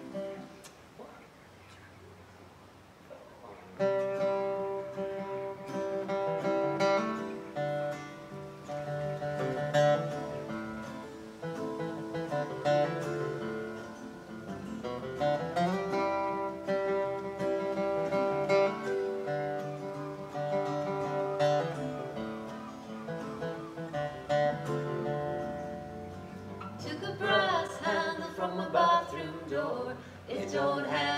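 Acoustic guitar playing the introduction to a folk song, coming in about four seconds in with sustained picked chords. A singing voice joins near the end.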